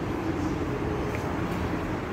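Steady low outdoor background rumble with no distinct knock or click standing out.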